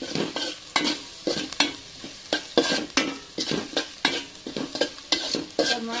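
Metal spatula scraping and knocking against an aluminium pot, in irregular strokes about twice a second, as sliced onions and green chillies are stir-fried in oil, with a steady sizzle of frying underneath.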